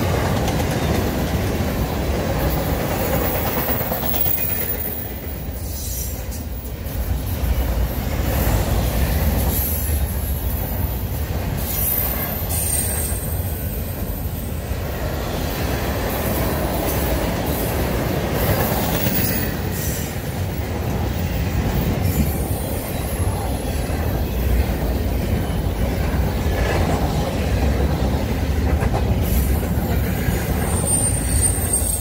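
Empty double-stack intermodal well cars of a freight train rolling past at close range: a steady rumble of steel wheels on rail, with short high-pitched wheel squeals now and then.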